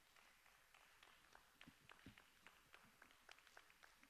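Near silence: faint room tone with scattered small clicks and rustles.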